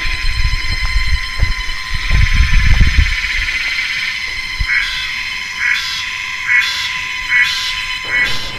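Cicadas droning loudly and steadily, with a pulsing call about once a second through the second half. A low rumble on the microphone runs under the first three seconds.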